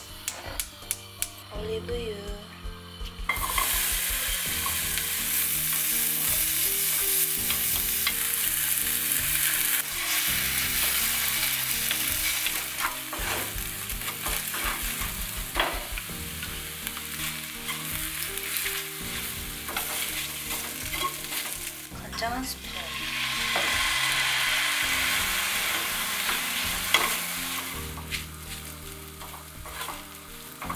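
Egg, diced yellow bell pepper and rice frying in a nonstick pan, sizzling, stirred and scraped with a wooden spatula. The sizzle starts abruptly about three seconds in and swells again later on.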